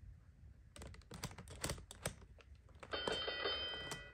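The plastic dials of a LeapFrog Twist & Shout Division toy click rapidly as they are twisted by hand. Near the end the toy plays a short, steady electronic chime for a correct answer.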